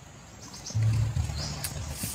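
Low, deep cooing of a caged decoy dove, beginning about three-quarters of a second in and repeating in short phrases, with a few faint high bird chirps.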